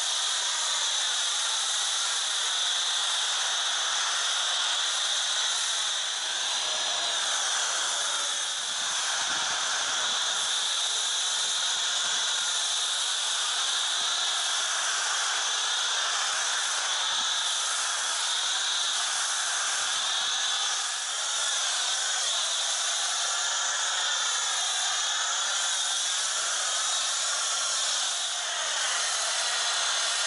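MTM PF22 foam cannon on a pressure washer spraying snow foam onto a car: a steady high hiss of the spray, with a few slight dips in level.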